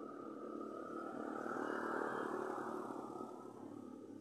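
A vehicle passing along the street: a faint rush of engine and road noise that swells to its loudest about halfway through, then fades away.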